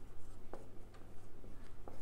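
Marker pen writing on a whiteboard: short strokes of the felt tip against the board, with two sharper strokes about half a second in and near the end, over a steady low hum.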